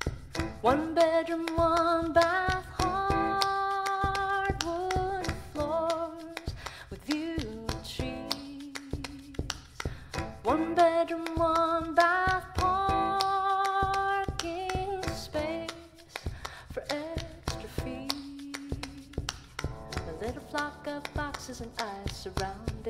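A woman singing live with a grand piano. She sings two long phrases, each opening with a rising note, then quieter lines near the end, over a steady beat of sharp taps.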